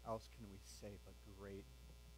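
Steady low electrical mains hum from the sound system, with faint, quiet spoken words over it.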